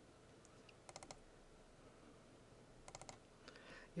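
Faint computer mouse clicks over near-silent room tone: a quick cluster of clicks about a second in and another about three seconds in, as with double-clicks opening folders.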